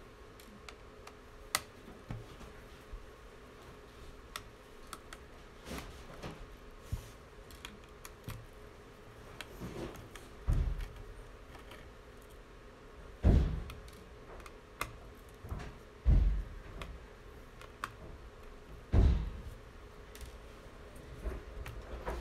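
Scattered small clicks and ticks of a screwdriver working out the tiny screws that hold a laptop's logic board. In the second half there are four louder dull thumps, a few seconds apart.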